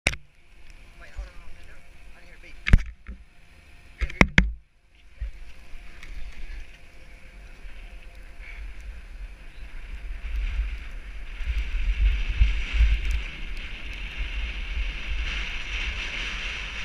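Snowboard sliding down packed snow, with wind buffeting the microphone; the rumble and hiss build as the rider picks up speed. In the first few seconds there is one sharp knock, then a quick pair of knocks.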